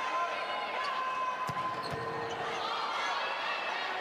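Volleyball rally on an indoor hardwood court: shoes squeaking on the floor and the ball being struck, with a sharp hit about a second and a half in and a fainter one soon after.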